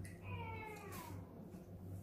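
A single short high-pitched call, falling slowly in pitch and lasting under a second, over a steady low hum.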